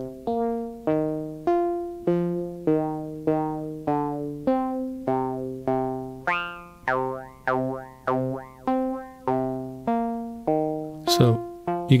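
Mutable Instruments Plaits Eurorack synthesizer voice playing a sequence of short decaying notes, about two a second, stepping between pitches, each with a vowel-like formant 'wow' sound. For a few notes in the middle the formants sweep up and down as the knobs are turned.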